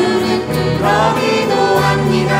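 Two women singing a Catholic praise song together into microphones, holding long notes, over keyboard and guitar accompaniment.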